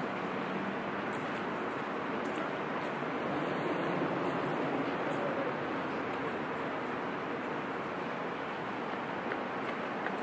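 Steady city ambience: a constant hiss of distant traffic that swells slightly in the middle.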